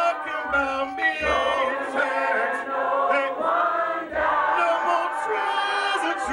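A cappella hymn singing with no instruments: a male song leader sings into a microphone while a group of voices sings along in harmony.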